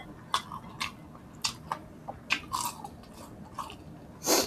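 Close-miked crunchy chewing and biting of crispy fried pork, with sharp crunches about every half second to second.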